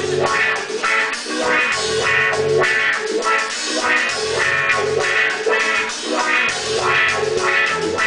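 A live band playing an instrumental passage between sung lines: strummed acoustic guitar over a drum kit, with a steady, even beat.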